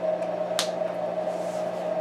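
A whiteboard marker's cap snapped on once: a single sharp click about half a second in, over a steady low room hum, with faint rustling near the end.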